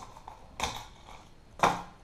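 Hands handling a fishing lure's packaging: a few scattered clicks and rustles of plastic and cardboard, with a sharper click about a second and a half in.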